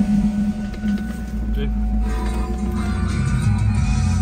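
1999 Ford Mustang engine idling steadily, with the car radio playing music that comes in about two seconds in.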